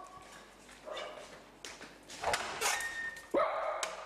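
A dog whining and yipping a few short times, with one high whine held briefly near the end.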